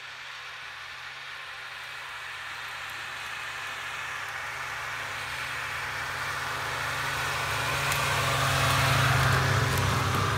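Snowmobile engine running as the machine approaches at a steady pace, growing louder and passing close by near the end.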